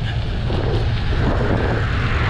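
Steady rushing noise of a bicycle being ridden: wind on the handlebar camera's microphone and the tyres rolling on gravel.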